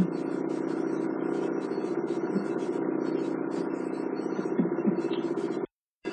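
Steady background hum made of many even tones, with faint irregular flecks of hiss above it; it cuts off abruptly near the end.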